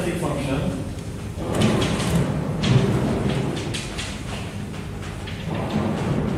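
Chalk tapping and scraping on a blackboard while writing, in short bursts about one and a half to three seconds in.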